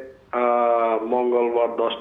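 Speech only: a caller's voice heard over a telephone line, thin and narrow-sounding, with a short pause near the start.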